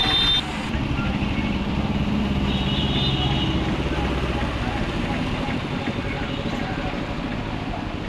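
Motorcycle engines running at low speed as the bikes ride through standing floodwater. A brief high-pitched beep sounds right at the start and another about three seconds in.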